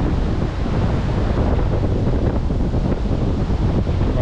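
Strong wind buffeting the microphone in a steady low rumble, with sea surf beneath it.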